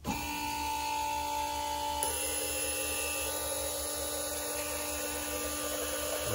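Four decapped fuel injectors held open on a homemade flow bench, spraying straight streams of fuel into glass jars while the electric fuel pump runs. It is a steady hiss with a steady whine that starts abruptly and holds even, with a slight change in pitch about two seconds in.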